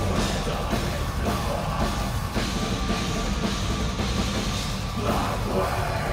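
Metal band playing live: distorted electric guitars over a pounding drum kit, a dense, unbroken wall of sound.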